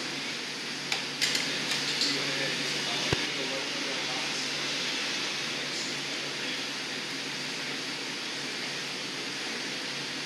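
Steady roar of a glassblowing hot shop's burners and ventilation fans with a low steady hum, and a few sharp clicks and knocks in the first three seconds.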